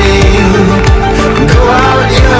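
Background electronic dance music with a steady kick drum about twice a second under synth chords and a melody.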